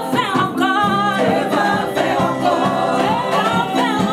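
Live gospel worship music: a woman sings the lead line into a microphone, joined by backing singers, over an amplified band with steady bass notes underneath.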